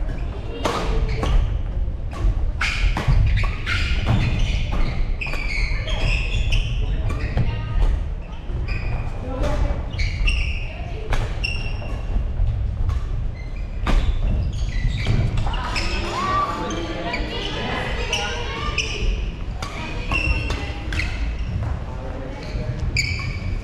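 Badminton rackets striking shuttlecocks in play on several courts, sharp smacks at irregular intervals, with footfalls thudding on a wooden gym floor, all echoing in a large hall.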